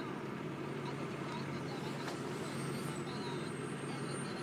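Cotton module truck's engine running steadily as the truck moves in, a steady low hum under a continuous noisy haze.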